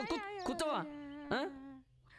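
A voice making drawn-out, non-word cries with sliding, wavering pitch, a cat-like wail, one note held for about a second before it cuts off near the end.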